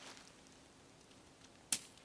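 A tent pole end locking into place on the tent body, with one sharp click near the end.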